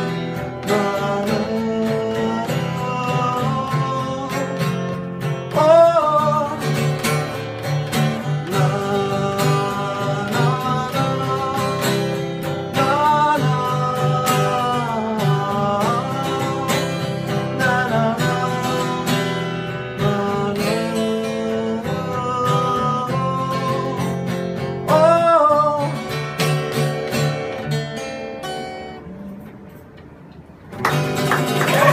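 Acoustic guitar strummed steadily under a man's singing voice, a solo live song. The playing dies away near the end.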